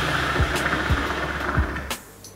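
Hookah water base bubbling as smoke is drawn through the hose in one long pull: a steady rushing hiss with low gurgles at uneven intervals, stopping abruptly just before the end as the draw ends.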